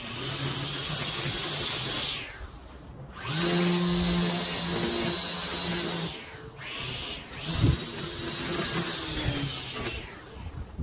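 Small engine of a lawn mower running, its sound dropping away briefly twice, about three and seven seconds in, then swelling again as the machine comes back.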